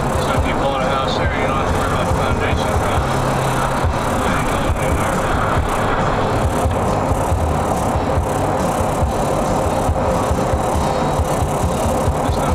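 Steady road rumble inside a moving car, with music playing over it.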